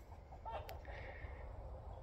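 A pause in a man's talk: faint low background rumble, with a softly spoken word about half a second in and a single small click just after.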